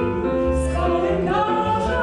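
A man and a woman singing a song in Polish as a duet, with accordion accompaniment; the voices rise to a higher held note about a second and a half in.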